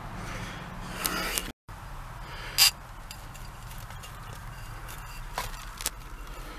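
A glass bottle being worked free by hand from a hard-packed dirt wall: soft scraping of soil, with one sharp short scrape or knock about two and a half seconds in and two smaller ones near the end.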